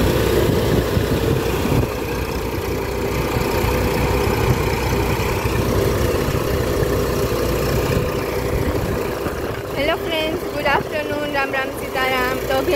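Tractor-driven threshing machine running steadily while pearl millet earheads are fed into it: the tractor engine and the threshing drum make a continuous drone with a steady tone over a low rumble. Voices join in near the end.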